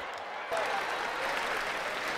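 Theatre audience applauding, the applause growing louder about half a second in.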